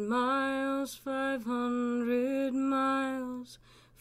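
A woman's solo voice singing a cappella in long held notes, breaking off briefly about a second in and pausing for a breath near the end.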